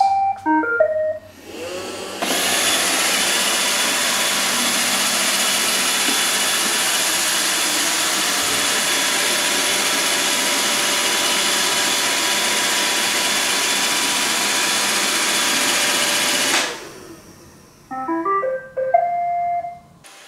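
iRobot Roomba 637 robot vacuum plays a short beep tune as its Dock button is pressed, then its vacuum motor and brushes run steadily for about fourteen seconds before winding down. Near the end it plays another short beep tune as it reaches its docking station.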